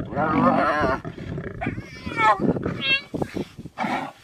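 Spotted hyenas and lions at a contested kill. High, wavering calls fill the first second, over lower growling, and a single call rises and falls near three seconds. A few short sharp sounds follow near the end.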